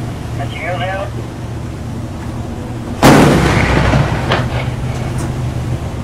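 A single shot from a 20 mm Oerlikon GAM-B01 deck cannon, fired as a warning round at a ship's bow: one sharp report about three seconds in, ringing away over about a second. The ship's engine hums steadily underneath.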